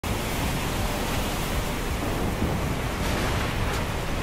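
Steady storm ambience: a continuous rushing noise, even and unbroken, with no distinct thunderclaps.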